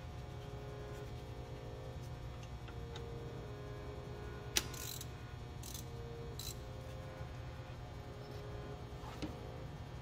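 Hand ratchet backing out a 10 mm bolt on a diesel engine's high-pressure oil pump: faint metal ticks, with one sharper click about halfway through, over a steady low hum.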